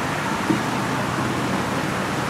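Steady background noise of distant road traffic, with a faint low hum and a small tick about half a second in.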